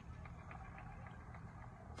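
Faint, steady low background rumble of a car cabin, with a few faint small ticks in the first second.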